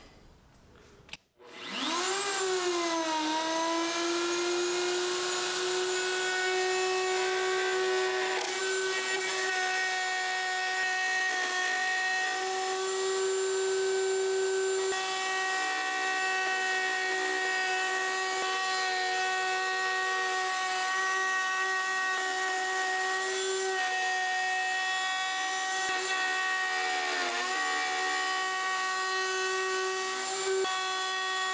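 Electric router in a table, fitted with a ball-bearing flush-trim bit, switched on about a second in. Its pitch swoops as it comes up to speed, then it runs with a steady high whine while trimming a high-temperature plastic piece to a template. The pitch dips briefly near the end as the cut loads it.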